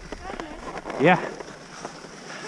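A single short 'yeah' spoken about a second in, over a faint steady hiss and a few light clicks.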